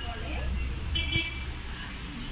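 Faint voices over a steady low rumble, with a brief high-pitched toot about a second in.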